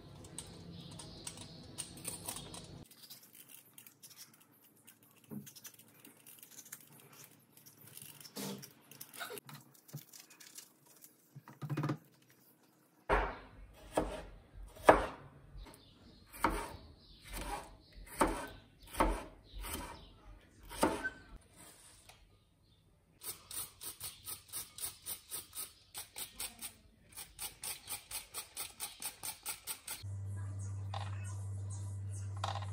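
Faint scraping and handling of a vegetable peeler on red bell pepper, then a chef's knife chopping the pepper on a cutting board, in separate sharp chops about one a second. Near the end, a faster, even run of about three strokes a second.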